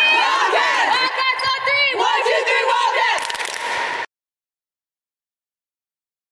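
A group of girls shouting together in a team huddle chant, many voices at once. It cuts off suddenly about four seconds in.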